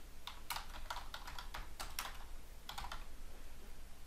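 Typing on a computer keyboard: a run of quick, irregularly spaced keystrokes as a short name is typed in.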